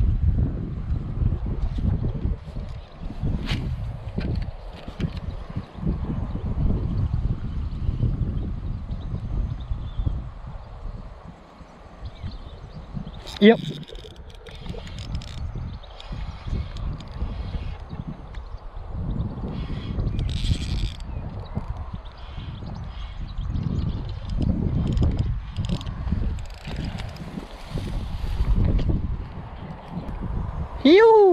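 Wind buffeting the microphone in a low, gusting rumble that rises and falls, with short light rustles in the second half.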